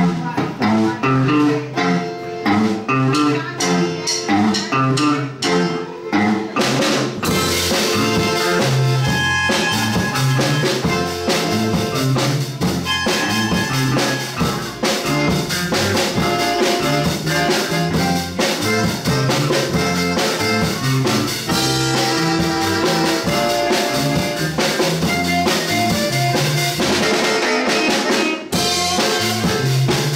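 Live blues-conjunto band playing: electric guitar and electric bass riff with a button accordion, and the drum kit with cymbals joins in fully about seven seconds in and keeps a steady beat.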